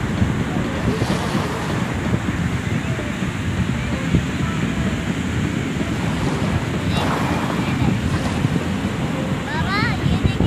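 Sea surf breaking and washing up a sandy beach, with strong wind buffeting the microphone in a steady low rumble. Faint voices of people in the water come through now and then.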